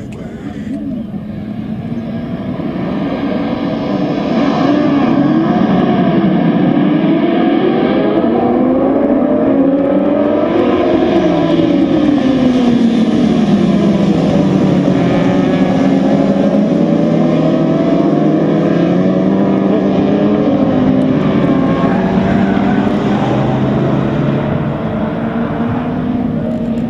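Several racing sport-bike engines revving hard together, their overlapping notes sweeping up and down in pitch as the pack accelerates and passes. The sound swells over the first few seconds and stays loud.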